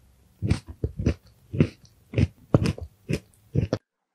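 Crunchy chewing picked up very close to the mouth, with a crisp crunch about twice a second, cutting off abruptly near the end.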